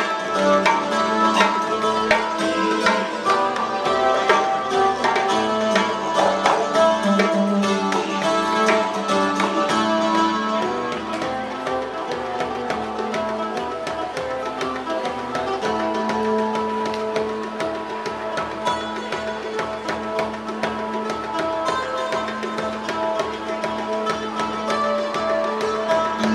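Street busking music: a didgeridoo holding one steady low drone under a strummed acoustic guitar and a djembe hand drum beaten in a quick, busy rhythm.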